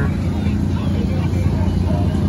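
Portable generator engine running with a steady low drone, with crowd chatter over it.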